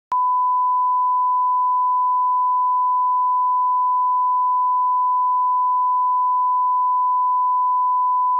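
Broadcast 1 kHz line-up test tone accompanying colour bars: one steady, unbroken beep at a constant level, starting with a click just after the beginning. It is the reference tone used to set audio levels at the head of a broadcast tape.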